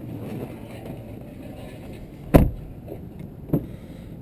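A vehicle door shut with a heavy thump a little past halfway through, followed about a second later by a lighter click, over low handling rumble.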